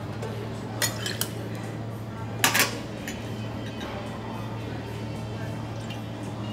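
Stainless-steel bar tools clinking against a metal mixing tin as a cocktail is made: a few light clicks about a second in, then a louder clatter a little before halfway, over a steady low hum.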